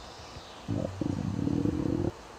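A stomach rumbling loudly: a short growl about two-thirds of a second in, then a longer one that runs on and stops abruptly.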